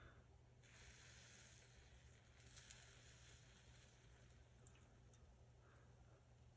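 Near silence, with a faint rustle of hands handling things from about a second in to past halfway and one light click in the middle.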